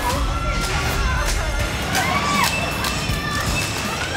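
Background music with a steady low beat under the overlapping excited shouts and squeals of several players.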